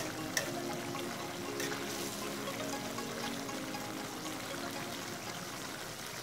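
Chicken strips sizzling and simmering in butter and their own juices in a frying pan, a steady hiss, with a couple of light spatula clicks in the first two seconds.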